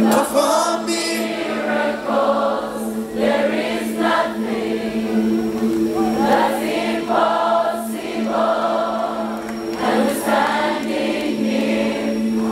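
Live gospel worship music: many voices singing phrases together over a single low note held steadily underneath.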